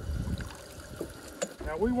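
Water dripping and trickling off a wet cast net held up over the boat, with a few light clicks and knocks about a second in.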